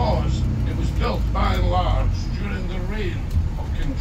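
A man's voice in snatches of speech over the steady low rumble of a moving double-decker tour bus.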